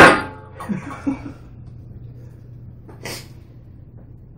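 A person's sudden, loud vocal burst right at the start, fading within a fraction of a second, followed by a few faint low voice sounds and a short breathy hiss about three seconds in.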